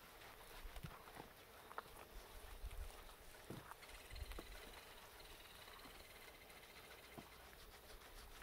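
Near silence: faint soft rubbing and squishing of hands working shampoo lather into a wet pit bull's coat, over a low rumble of wind on the microphone. About four seconds in, a faint high, evenly pulsing trill runs for a couple of seconds.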